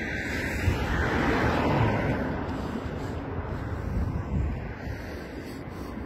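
A car driving past on the street, its road noise swelling over the first couple of seconds and then slowly fading, with wind noise on the microphone underneath.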